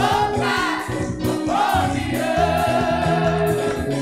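Gospel praise song sung by a small vocal group through microphones, over electric keyboard accompaniment with steady bass notes; a long wavering note is held in the second half.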